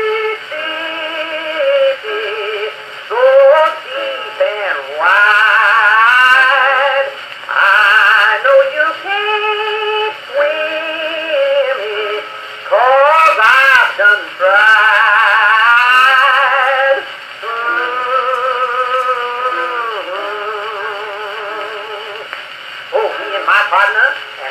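Edison Blue Amberol cylinder playing on an Edison cylinder phonograph with a horn: a 1925 acoustic-era recording of a country song, its melody carried with strong vibrato. The tone is thin, with no bass and little treble.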